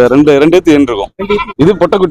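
Goats bleating, a run of loud, quavering calls with short breaks between them.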